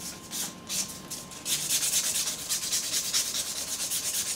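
Nail buffer block rubbing back and forth over an acrylic nail, smoothing out the marks left by the file. The strokes come about three a second at first, then faster and denser from about a second and a half in.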